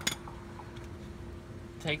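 A single short metallic clink right at the start, a steel hand tool such as pliers being picked up or knocked, then a faint steady hum underneath.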